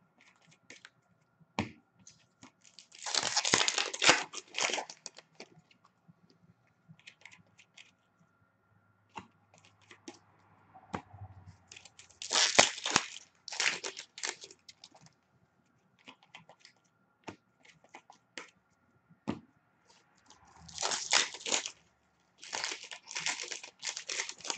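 Foil wrappers of hockey card packs being torn open and crinkled, in about four bursts of a second or two each, with small clicks and ticks from cards being handled in between.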